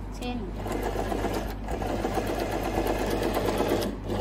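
Janome 393 sewing machine running steadily, stitching through fabric on its yellow D pattern stitch; the motor and needle start about half a second in and run on without pause.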